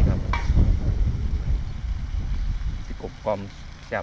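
Crispy pork and chillies sizzling in a pan over an open wood fire, under a low rumble that eases after about two seconds.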